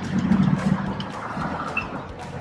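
Steady rumble of city street traffic from the road below.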